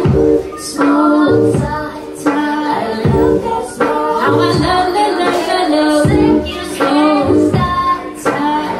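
A woman singing live into a microphone over an electronic lofi hip-hop beat, with a steady low kick and ticking hi-hats under her voice.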